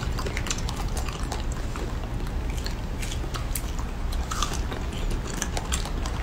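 Close-up biting and chewing of fresh strawberries: a run of scattered short wet clicks and smacks over a steady low hum.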